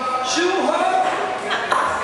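A man singing with acoustic guitar accompaniment in a live performance, his voice sliding through a phrase about half a second in over held guitar notes.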